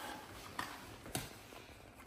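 Two light clicks about half a second apart over faint room noise, from a small cardboard light-bulb box being handled.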